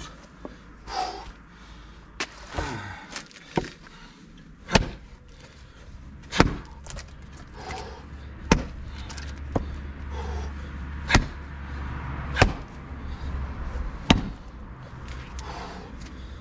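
Axe striking an old wooden tree stump, about six hard chops one and a half to two and a half seconds apart with a few lighter knocks between; the stump is not splitting.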